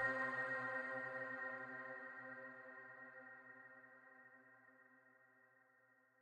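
The last held chord of the outro music fading out: several steady tones ringing and dying away smoothly, gone by about five seconds in.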